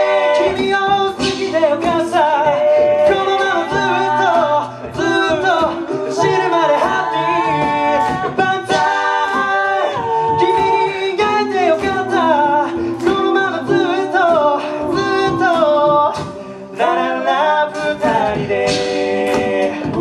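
Male a cappella group singing a J-pop song in close harmony, with a sung bass line underneath and a steady percussive beat made by voice.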